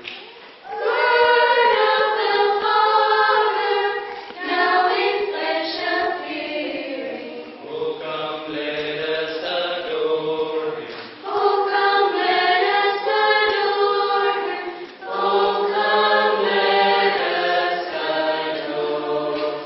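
Mixed choir of men and women singing a Christmas carol, in sung phrases with short breaks between them.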